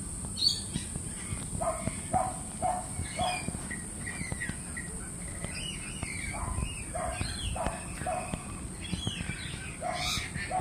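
Birds calling: short repeated calls about half a second apart, in a run of four a couple of seconds in and another run past the middle, with higher chirps over them.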